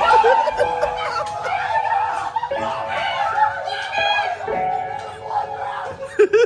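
People snickering and laughing under their breath, with a few steady electronic tones held underneath.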